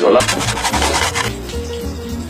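A spoon or whisk scraping round a bowl while wasabi mayonnaise is being mixed, over background music with a pulsing bass.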